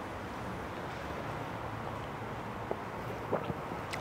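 Steady, low background of street traffic with wind on the microphone, with a couple of faint clicks near the end.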